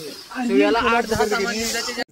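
A person's voice talking.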